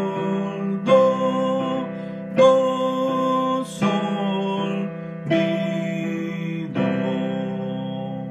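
Digital piano playing a slow major-key chord study: sustained chords, a new one struck about every second and a half, the last one decaying away.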